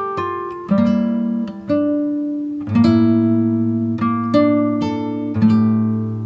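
Slow acoustic guitar music: plucked notes and chords over low bass notes, a new one about every second, each left to ring and fade.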